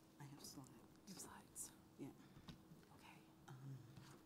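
Faint, indistinct low-voiced speech, too soft to make out words.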